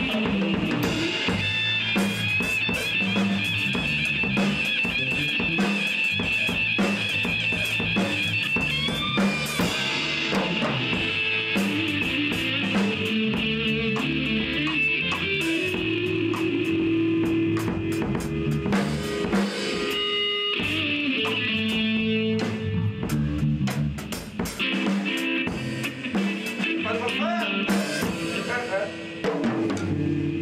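Live band jamming: electric guitar playing sustained lead lines with wavering vibrato over electric bass and a drum kit keeping a steady beat.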